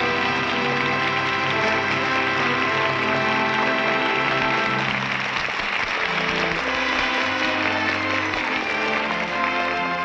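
Studio orchestra playing sustained closing music on a 1938 radio broadcast recording, with a studio audience applauding over it; the applause grows louder about halfway through.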